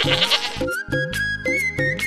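Film soundtrack music with a steady beat; over it, at the start, a goat kid bleats once with a quavering call of about half a second. A high held melody line comes in about a second in.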